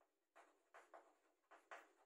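Chalk writing on a chalkboard: five faint, short scratching strokes as letters are written.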